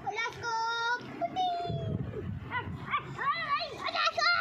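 A young child's high voice calling out and babbling without clear words, in several drawn-out, wavering sounds.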